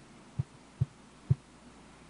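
Three short, low thumps about half a second apart, each a little louder than the last, over a faint steady hiss.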